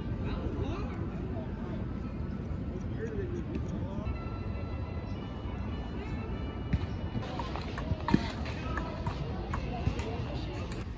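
Outdoor city park ambience: a steady low rumble with indistinct voices in the background, and a few sharp clicks in the second half.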